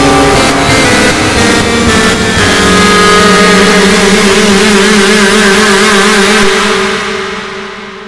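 Heavily distorted, effected logo soundtrack. Choppy music breaks up in the first couple of seconds into a loud, steady, harsh drone with two held low tones, which fades out over the last second and a half.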